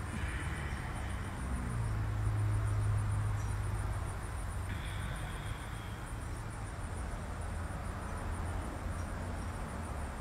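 Outdoor ambience: insects chirping in a fast, steady pulse, high-pitched, with a low hum that swells about two seconds in and then fades.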